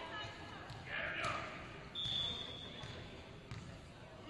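Voices calling out in a gymnasium during a volleyball match, with one short, steady referee's whistle blast about two seconds in.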